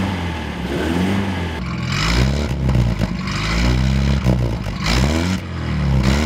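A vintage car's engine revved several times by blips of the accelerator pedal, its pitch rising and falling with each blip, heard through the exhaust.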